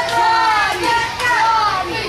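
Several children in the crowd shouting and yelling over one another in high voices.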